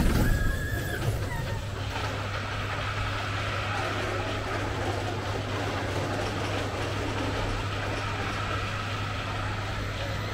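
A small family roller coaster train passing close by on a curve, with a high squeal held for about a second as it goes past. The squeal then falls away into a steady background din with a low hum as the train runs on out of view.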